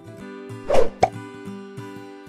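Background music with steady sustained notes, broken about three-quarters of a second in by a short loud pop and then a sharp click just after one second.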